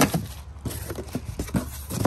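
Packaging being handled: plastic wrap crinkling and cardboard rustling in a run of small irregular crackles and scrapes.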